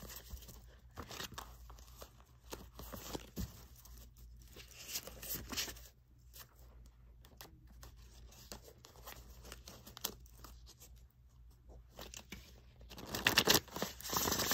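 A stack of tarot cards being shuffled by hand: a run of dry riffling, flicking cards, growing louder near the end.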